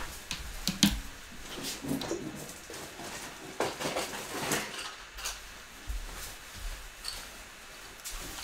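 Scattered light clicks, knocks and rustles of small objects being handled, someone rummaging to grab something.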